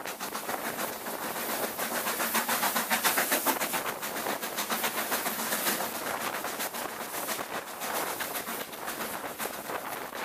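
LMS Black 5 4-6-0 steam locomotive working hard at the head of a train, its rapid exhaust beats mixed with the train's running noise, heard from an open carriage window. It grows louder a couple of seconds in, then settles.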